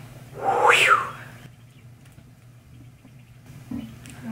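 Birds calling: one loud call about half a second in that rises and falls in pitch, then only faint sounds.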